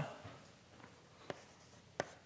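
Chalk on a blackboard as an equation is written: a few faint, short taps and scrapes.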